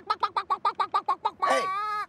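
A voice making a fast run of short, pitched yelps, about eight a second, then breaking off into a held call near the end.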